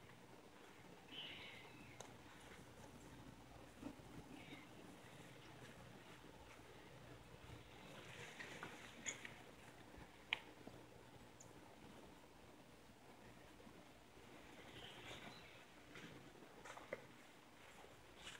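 Near silence: faint outdoor room tone with a few soft high chirps and a few small clicks.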